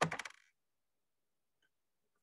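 The clipped end of a man's spoken word, trailing off in a few short clicks within the first moment, then near silence.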